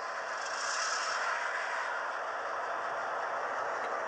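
Diesel locomotive sound effects from the Bachmann EZ App, playing through an iPod's small speaker: a steady, thin running sound with a brief brighter hiss about half a second in.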